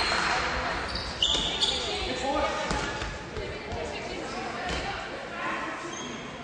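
Indoor handball play in a reverberant sports hall: a handball bouncing on the hard floor with a few sharp thuds about a second in, amid players' and spectators' shouts. The applause dies away in the first second.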